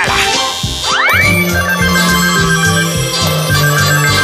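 A telephone ringing: two trilling rings about two seconds apart, over background music with a steady bass beat. A quick rising glide comes about a second in, just before the first ring.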